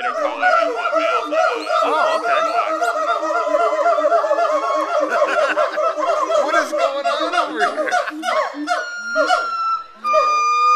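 Gibbons calling in a loud, continuous chorus of overlapping whooping notes that swoop up and down, with a long held note near the end.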